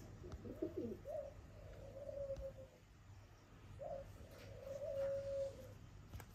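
A crow giving soft, low cooing calls: a short wavering one near the start, then two long, steady notes, each opening with a brief rise in pitch.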